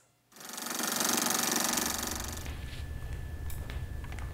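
A rapid buzzing rattle swells in about half a second in and fades over the next two seconds, leaving a low rumble with a few faint clicks.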